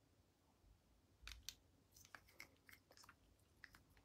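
Near silence, broken by a few faint, short, sticky clicks and ticks of lip gloss being applied to the lips, scattered from about a second in to near the end.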